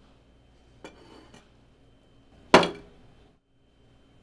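A dinner plate set down on a restaurant table: a light clatter about a second in, then one sharp, loud clack with a brief ringing decay past halfway.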